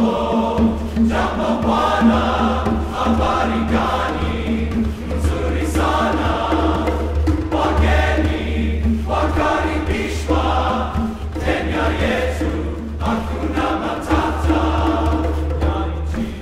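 Men's chorus singing, with a steady low drone sustained beneath the moving upper voices.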